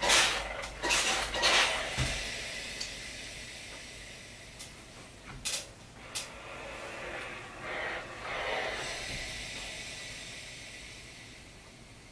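Steam iron pressing a lined cotton pocket on an ironing board. Fabric rustles as it is smoothed by hand at the start, and a faint steam hiss fades away slowly. Around the middle there are a couple of sharp knocks as the iron is handled.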